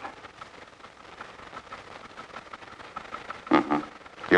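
Low steady hiss of an old film soundtrack during a pause in the dialogue, with a short vocal sound, like a brief word or grunt, about three and a half seconds in.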